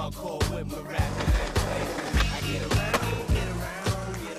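Music with a steady beat, mixed with skateboard sounds: wheels rolling on concrete and sharp clacks of the board.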